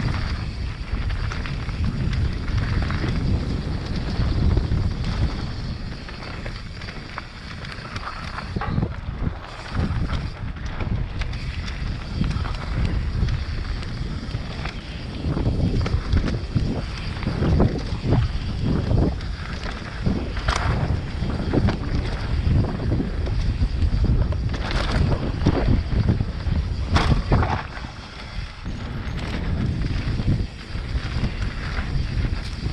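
Mountain bike riding down a dirt singletrack: tyres rolling over dirt and leaves, with knocks and rattles from the bike over bumps that come thicker in the second half, under a steady rumble of wind on the microphone.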